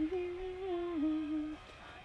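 A woman humming a short phrase with her mouth closed, the pitch stepping gently downward; it stops about a second and a half in.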